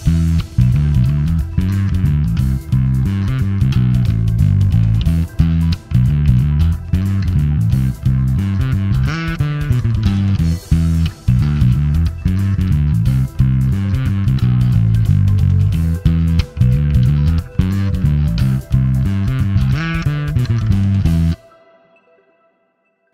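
Sterling by Music Man DarkRay electric bass played fingerstyle: a riff of low notes in a steady rhythm with short breaks, stopping suddenly near the end.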